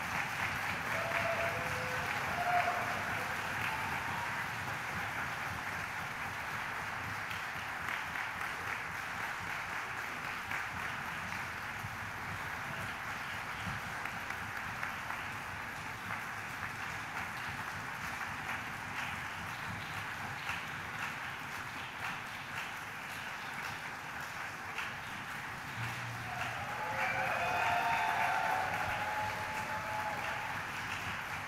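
Concert audience applauding steadily, swelling with a few cheering voices near the end.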